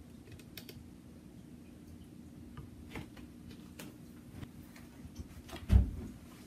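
Scattered light clicks and taps over a faint steady low hum, then one heavy thump near the end.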